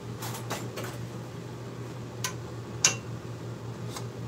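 A few light clicks and clinks of kitchen utensils against cookware, the sharpest about three seconds in, over a steady low hum.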